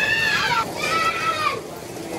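Children's high-pitched shouts while playing in the street: two drawn-out, arching calls in the first second and a half.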